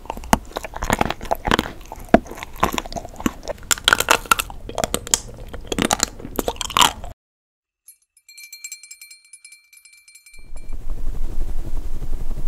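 Close-miked crunchy bites and chewing of hard sweets, sharp and irregular. About seven seconds in it cuts off to near silence, broken by a short twinkling chime of high tones, and then hands rub together with a steady dry swishing.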